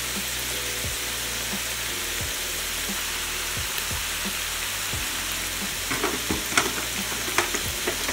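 Ground beef sizzling steadily as it browns in a pan, over a low hum, with a few knocks near the end.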